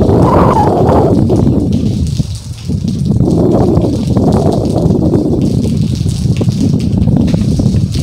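Cyclone wind gusting hard against the microphone in loud surges that ease off briefly about two and a half seconds in, with rain falling.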